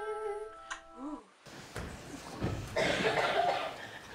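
A short hummed voice over held, chime-like notes of background music, both cutting off abruptly a little over a second in. A noisier recording follows, with a louder stretch of indistinct voices and noise from about two to three and a half seconds in.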